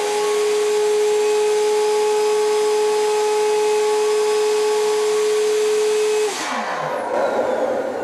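Vacuum pump motor of a Ranar XPO-2331 LED vacuum-top exposure unit running during an exposure cycle, holding the blanket down on the screen: a steady hum over an airy noise. About six seconds in the motor cuts off and winds down with a falling pitch, followed by a softer rushing noise.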